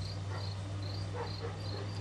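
A steady run of short, high-pitched chirps, about three to four a second, over a constant low hum.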